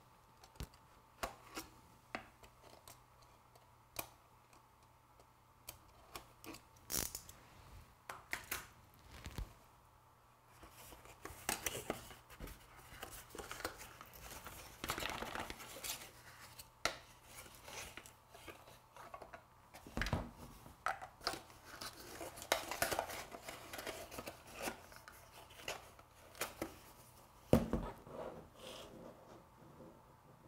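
Close-up unboxing of a cardboard perfume box: a utility knife blade slitting the wrapping with small clicks and scrapes, then longer stretches of wrapping rustling, tearing and crinkling as the box is handled and opened. Two low thumps, about twenty seconds in and near the end, as things are set down.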